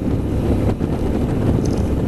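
2012 Suzuki V-Strom DL650's V-twin engine running steadily at cruising speed through its aftermarket Akrapovič exhaust, baffle still fitted, mixed with wind rushing over the microphone.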